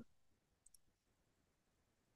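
Near silence: room tone in a pause between words, with one faint, tiny click a little under a second in.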